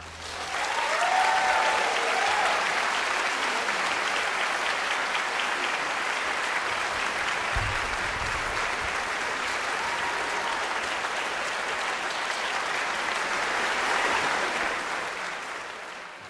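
Concert-hall audience applauding steadily, the clapping fading out near the end.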